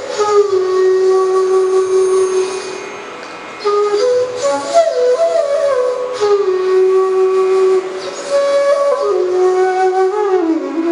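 Solo bansuri (bamboo flute) playing a slow melody in Raag Bhupali: long held notes joined by slides, with a short break about three seconds in before the phrase resumes.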